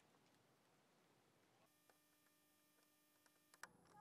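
Near silence. A faint steady electrical hum made of several thin tones starts about halfway in and cuts off with a click near the end.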